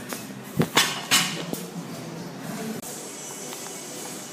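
A few sharp metallic clanks of gym weights and equipment, three or four in the first second and a half, then a steady low background.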